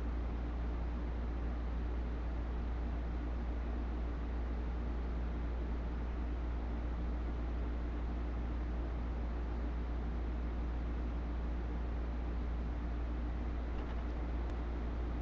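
Steady low hum and hiss of background noise, unchanging throughout, with no distinct sounds standing out.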